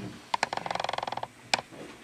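A sharp click, then a rapid rattling creak of evenly spaced ticks lasting just under a second, then another sharp click.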